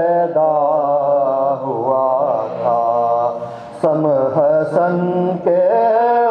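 A man's voice chanting an Urdu elegy (soz/marsiya) for Imam Husain in a slow, gliding melody with long held notes and no instruments, over a low note held steadily beneath. The phrase breaks off briefly a little under four seconds in and a new one begins.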